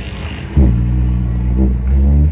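A didgeridoo drone comes in about half a second in: a steady, low buzzing tone with a stack of strong overtones, made by the player's lips vibrating into the tube. Its timbre shifts briefly near the end as the mouth shape changes.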